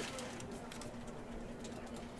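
A faint steady hum with light room noise.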